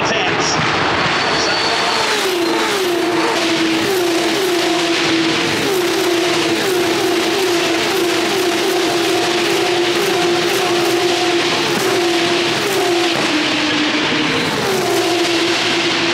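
Open-wheel racing cars passing at speed along the circuit, their engines a loud, high-pitched, continuous drone with a series of short dropping notes as they go by.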